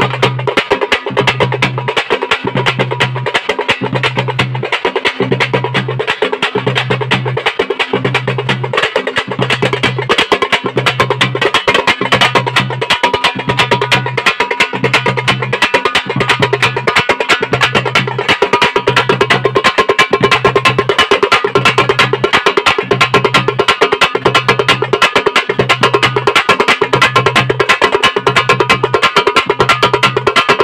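Thappattam folk drums (parai frame drums and other hand-held drums) playing a fast, dense rhythm, with a low beat recurring about once a second.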